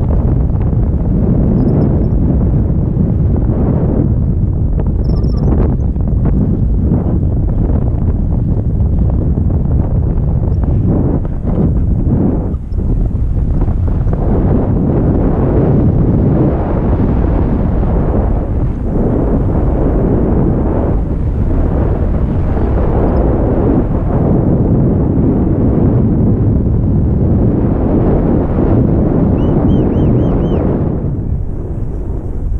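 Wind rushing over the camera microphone in paraglider flight: a loud, steady low rumble that eases briefly about twelve seconds in.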